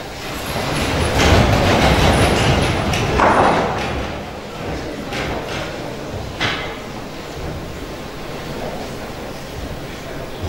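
A seated audience rising to its feet: a rush of rustling, shuffling and seats creaking for the first few seconds, with a few knocks of folding seats springing up, then the low murmur and shuffle of a standing crowd as the hall falls still for a minute of silence.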